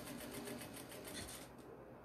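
Industrial straight-stitch sewing machine, heard faintly, running a short stretch of stitches in an even, fast rhythm that stops about a second and a half in.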